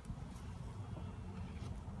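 Low, uneven rumble of wind buffeting the microphone, with no other clear sound above it.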